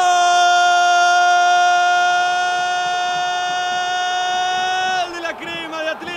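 A football commentator's long held goal shout, one unbroken note lasting about five seconds before normal speech resumes, over steady crowd noise.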